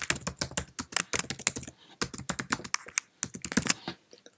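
Typing on a computer keyboard: a quick run of keystrokes with a brief pause a little before halfway through.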